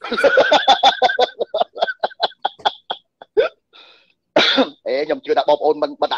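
A man laughing in a fast, even run of short bursts, then talking again about four and a half seconds in.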